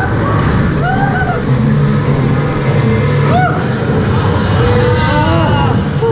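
Loud, steady low rumble of a flume-ride boat and its water moving through a dark show building, with short rising-and-falling calls laid over it.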